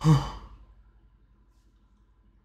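A man sighs once, a short loud voiced exhale that dies away within about half a second.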